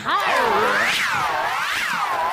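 A cartoon-style whistling sound effect, a single pitched tone swooping down and back up in smooth arcs, about one swoop a second.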